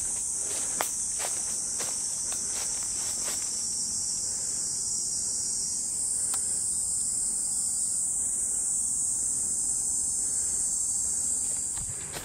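A dense, steady chorus of insects in the forest, high-pitched and continuous, easing off near the end. Over it in the first few seconds, footsteps crunch on dry leaf litter, about two a second.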